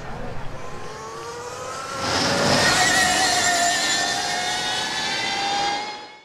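Electric racing motorcycle's motor whine, several tones rising steadily in pitch as it accelerates. It grows louder with a rush of noise about two seconds in as the bike passes, then fades out at the end.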